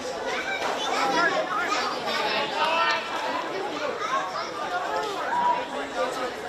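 Indistinct chatter of several voices talking over one another, with no one voice standing out.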